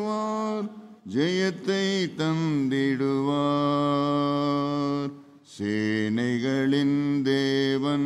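A man singing a slow Tamil worship song unaccompanied into a microphone, holding long notes with sliding ornaments, with short pauses for breath about a second in and again near five seconds in.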